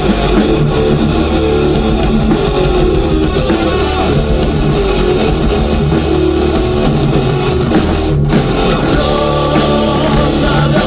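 Live heavy-metal band playing loud: distorted electric guitars over bass and a drum kit.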